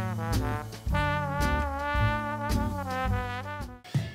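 Upbeat swing-style background music with horns and a bouncing bass line, cutting off suddenly just before the end.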